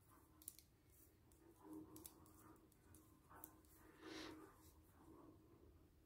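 Faint, scattered clicks of metal knitting needles as stitches are worked, with a brief soft rustle about four seconds in; otherwise near silence.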